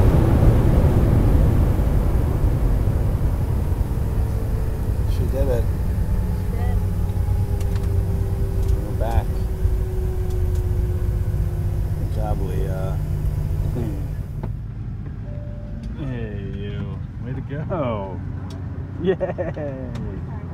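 Airliner cabin noise: a loud, steady low drone of the engines and airflow, with a baby's short coos and babbles over it. About two-thirds of the way through, the drone gives way abruptly to a quieter background while the babbling goes on.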